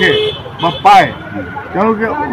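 A man speaking in short bursts, with road traffic noise in the background.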